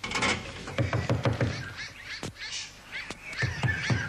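Tropical rainforest sound effect: a busy mix of bird and animal calls, many short chirps that rise and fall in pitch, over a string of dull knocks.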